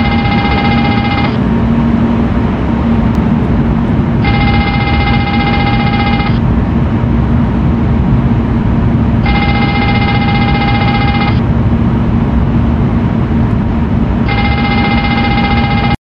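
Boeing 777 cockpit engine fire bell, as simulated in a trainer, ringing in bursts of about two seconds every five seconds over a steady cockpit background noise with a low hum. It is the fire warning for a fire in the left engine, and it cuts off suddenly at the end as the fire switch is pulled.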